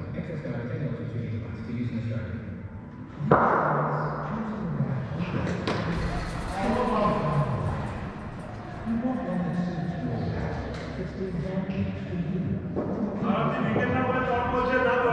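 A cricket bat striking the ball with one sharp knock about three seconds in, followed by a second sharp knock a couple of seconds later, amid players' shouts and calls.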